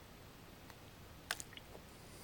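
Mouth sounds of someone tasting a swallow of cashew milk: a sharp lip smack or tongue click about a second and a half in, followed by a couple of softer ticks, over faint room tone.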